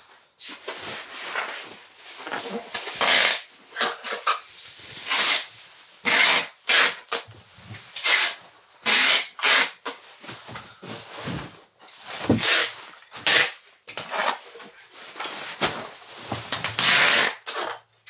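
Clear packing tape pulled off a handheld tape-gun dispenser in repeated tearing bursts, a second or less each, as it is run over plastic bubble wrap.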